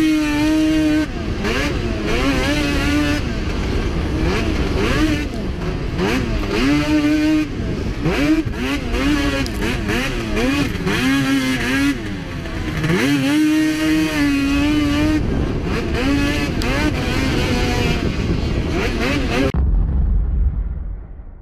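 Two-stroke race snowmobile engine, close to the rider, revving up and down again and again as the throttle is worked around the track, its pitch rising and falling. It cuts off sharply just before the end.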